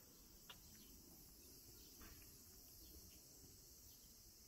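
Faint, steady high-pitched chorus of insects over a low, distant rumble, with a couple of faint ticks.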